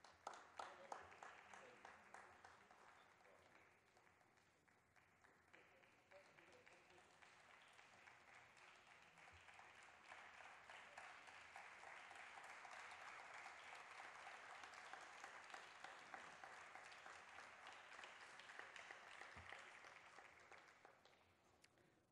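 Faint audience applause: a burst at the start that dies down a few seconds in, then builds again and holds steady before fading out near the end.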